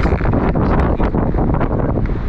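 Wind buffeting the microphone: a loud, steady rush heaviest in the low end, with gusty flutter.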